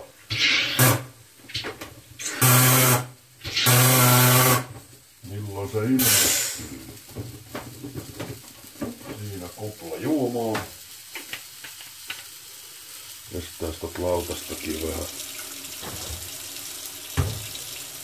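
A man's voice making wordless vocal sounds in the first half, then small kitchen handling clicks. Near the end a kitchen tap is turned on and water starts running into a stainless steel sink.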